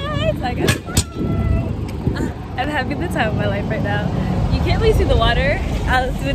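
A woman's excited wordless vocalizing, wavering squeals and laughs, over a heavy low rumble of wind on the phone's microphone as she rides a bicycle. Two sharp clicks about a second in.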